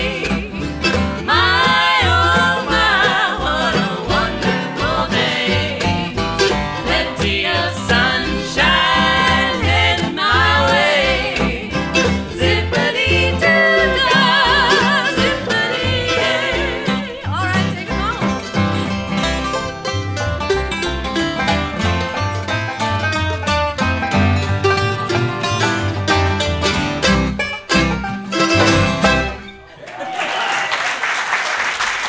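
Acoustic bluegrass string band playing, with five-string banjo, acoustic guitar and upright bass, the music running continuously and ending on a final chord just before the end.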